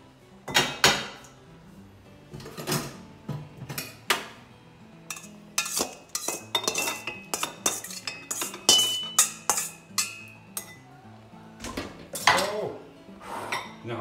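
Stainless steel pans and a metal colander clanking and knocking against each other, the gas range grates and ceramic bowls as they are handled, in irregular strikes. One strike rings briefly about nine seconds in.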